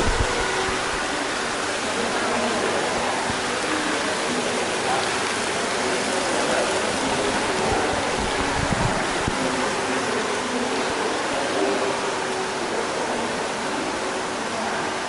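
Steady rush of water running and pouring into tiled plunge pools, with faint voices in the background.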